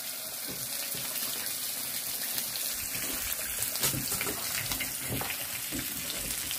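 Tteokbokki (rice cakes in red chili sauce) sizzling and bubbling in a frying pan on a portable gas burner, a steady hiss while a ladle stirs it, with a few light clicks of the ladle against the pan.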